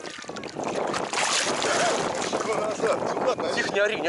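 Gusty wind on the microphone over choppy water lapping close by, growing louder about a second in.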